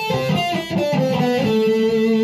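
Epiphone semi-hollow electric guitar playing a quick run of about six single picked notes of an A minor scale, then holding the last note.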